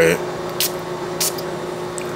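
Two short hisses from the spray atomizer of a Lattafa Raghba Wood Intense perfume bottle, about two-thirds of a second apart.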